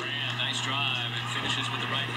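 NBA game broadcast audio playing in the background: a commentator's voice over arena noise, with a steady low electrical hum underneath.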